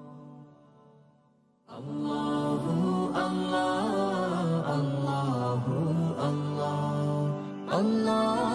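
A male vocal group's devotional chant fades out to near silence. About two seconds in, a new chanted vocal piece starts abruptly and carries on steadily, its melody gliding up and down.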